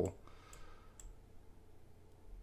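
Two faint computer mouse clicks about half a second apart, over quiet room tone.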